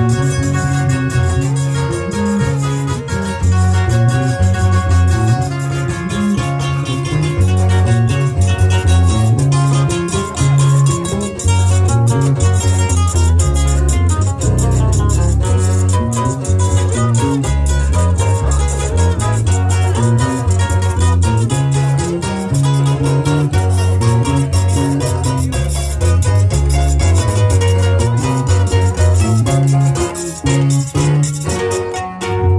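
A carranga band playing live: guitars and other plucked strings over a steady, regular bass beat, in an instrumental stretch with no singing.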